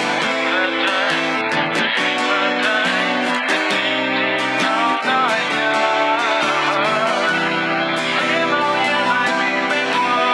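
Acoustic guitar strummed with the fingers, playing chords in a steady rhythm of frequent strokes while the chords ring on.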